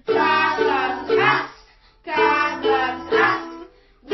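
Children singing a song to ukulele strumming, in two short phrases with a brief pause after each.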